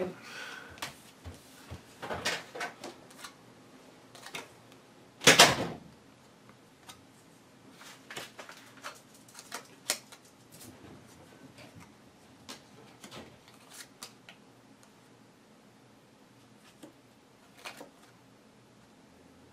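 Playing cards being handled and laid down one by one on a game table: a string of light clicks, flicks and snaps, with one louder clack about five seconds in.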